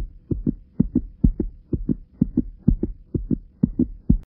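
Heartbeat sound effect: pairs of low thumps, about two pairs a second, over a faint steady hum.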